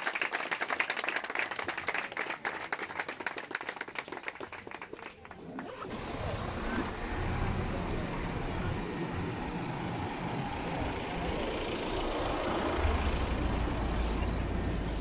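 A small crowd applauding, the claps thinning out and stopping about five seconds in. After that comes a steady low outdoor rumble and hiss, growing stronger near the end.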